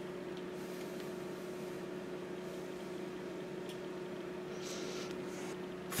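Quiet, steady background hum with a faint steady tone and a light hiss, with two faint brief hissy rustles, about a second in and about five seconds in.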